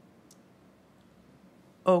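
Quiet room tone with one faint, short click about a third of a second in; speech starts just before the end.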